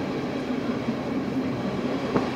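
Bernese Oberland Railway passenger train running along the track, a steady rumble heard from inside the carriage.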